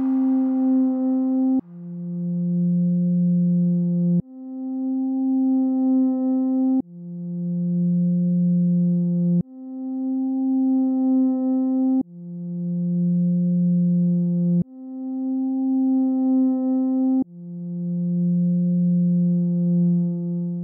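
Slow two-note synthesizer music: a higher and a lower sustained tone alternate, each held about two and a half seconds. Each note starts with a faint click and then swells.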